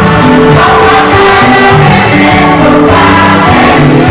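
Loud gospel music with a choir singing, sustained notes moving in pitch with no pause.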